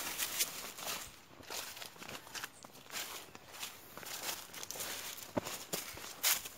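Footsteps through dry leaves and garden vegetation, with a series of soft, irregular crunches and rustles.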